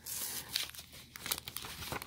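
Painter's tape being peeled and foil Pokémon booster-pack wrappers crinkling as the packs are worked off a sheet of paper: an irregular, crackly rustling with small clicks.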